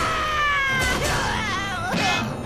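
A cartoon character's high-pitched scream of fright, sliding down in pitch for about a second and then wavering, over background music.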